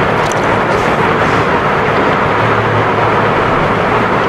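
A steady, even rushing noise with a low hum underneath.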